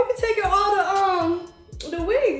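A voice singing a held, wavering melody for about a second and a half, over background music with a regular low beat.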